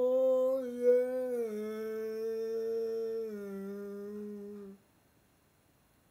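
A man's voice holding one long wordless sung note, which steps down in pitch twice and stops abruptly about five seconds in.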